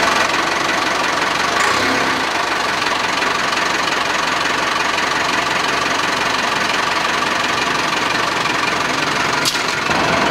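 A wheel loader's engine running steadily close by, with an even, constant sound.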